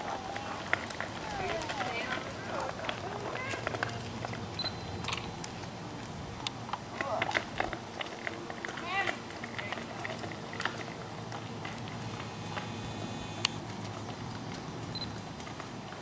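Faint, distant voices outdoors, a few short stretches of talk, with scattered light clicks and crunches over a steady outdoor background.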